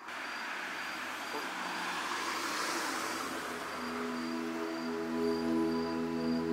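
A steady noisy hiss that swells a little and eases off over the first few seconds, with a faint high tone coming and going. Soft background music with held notes comes in about four seconds in.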